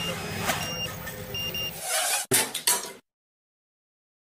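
Short high electronic beeps repeating at irregular intervals over steady outdoor background noise, followed by a few loud knocks and rustling bursts. The sound cuts off abruptly about three seconds in.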